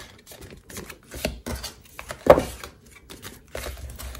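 Cardstock being folded and handled: soft paper rustles and scattered light taps and clicks, the sharpest about two and a quarter seconds in.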